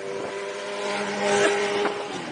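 Motorcycle engine running at a steady cruising speed, a constant hum under wind and road noise, swelling slightly in the middle.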